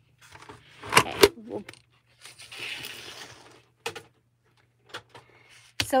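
Handling noise on a craft table: a couple of sharp clicks about a second in, then a soft scraping rustle lasting about a second, as a die-cutting machine and paper die-cut pieces are moved across a cutting mat, with a few light taps near the end.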